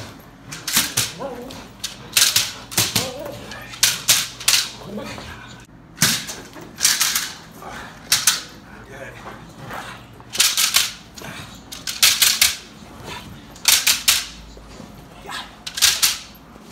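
A protection helper's training stick cracking repeatedly against the bite suit while a Malinois holds its grip, each stroke a quick rattle of several sharp cracks, coming every second or two with a short pause in the middle.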